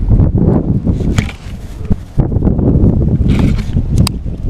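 Wind buffeting an action camera's microphone: a rough low rumble that drops away briefly about two seconds in, with a sharp click near the end.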